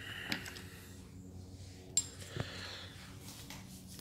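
Faint handling noise from a chainsaw and its plastic adjustment tool, with a few light clicks, the sharpest about two seconds in.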